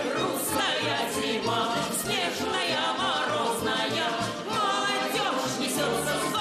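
Live Russian folk song: a woman sings with vibrato, backed by choral voices and accordion accompaniment with a regular bass beat.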